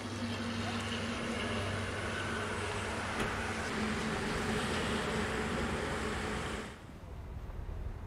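Cars and traffic with engines running: a steady noise with a low engine hum. About seven seconds in it falls away to a quieter background.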